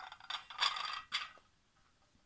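Porcelain cup and saucer being handled and set down on a cloth-covered table: a quick run of scrapes and light clicks over the first second or so, then quiet room tone.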